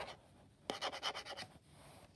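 Fingertip rubbing and scratching over the frosted diffuser and metal frame of a solar LED wall light. It is a short run of quick scratchy strokes that starts a little under a second in and lasts under a second.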